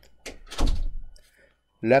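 A single dull thump about half a second in, heavy in the bass, with a couple of sharp clicks around it. A man's voice begins speaking near the end.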